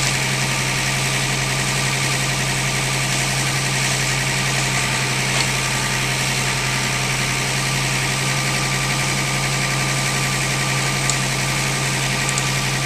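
An engine running steadily at an unchanging speed, a constant low hum with no revving.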